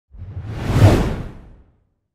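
Whoosh transition sound effect: one swell of rushing noise that builds to a peak just under a second in and fades away by about a second and a half.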